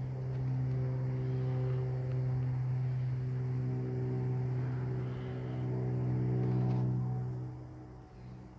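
A steady low droning hum with several held higher tones above it that shift now and then, fading away near the end.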